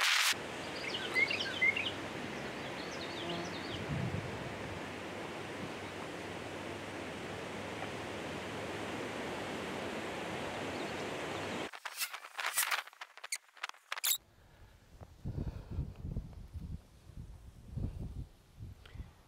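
Outdoor ambience: a steady hiss of wind with a few bird chirps in the first few seconds. The hiss cuts off suddenly after about twelve seconds, followed by a quick cluster of sharp clicks and then faint, uneven low sounds.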